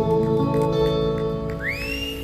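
Two acoustic guitars playing a slow instrumental passage, their chords ringing and fading. About one and a half seconds in, a high whistle rises in pitch and then holds.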